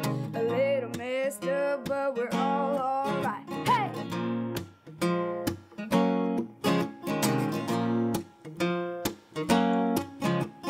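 Strummed acoustic guitar chords with a boy's singing voice over them for the first four seconds or so. After that the guitar strums on alone in an even rhythm.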